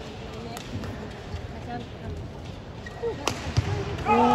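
Badminton racket hitting a shuttlecock during a rally, with a sharp crack about three seconds in and lighter clicks around it, over the voices of an arena crowd.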